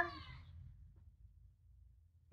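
A voice with a drawn-out, gliding pitch trails off in the first half second, then near silence: room tone.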